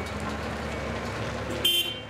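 Steady street and vehicle engine noise, with a short high-pitched horn beep near the end.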